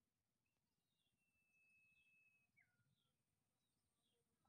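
Near silence, with one faint, long, high-pitched call held at a steady pitch that drops abruptly lower about two and a half seconds in.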